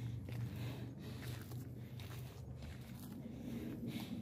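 Quiet footsteps of a hiker walking a dry dirt and stone-step trail, irregular steps about half a second to a second apart, over a steady low hum.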